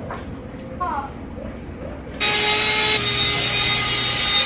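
A zipper on a fabric couch-cushion cover being pulled open in one steady run of about two and a half seconds, starting about two seconds in and stopping abruptly.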